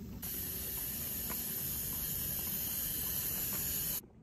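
High-speed dental handpiece running with its water spray on a mannequin's practice tooth: a loud, steady high-pitched hiss that starts a moment in and cuts off suddenly at the end.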